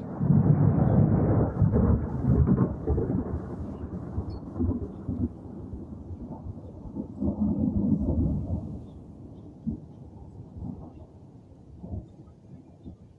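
A loud thunderclap that breaks suddenly into a deep rolling rumble, with sharp cracks over the first few seconds. It swells again about seven seconds in, then fades away.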